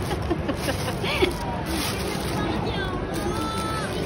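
Indistinct background voices and hubbub of a busy shopping-mall food court, with a brief click about a second in.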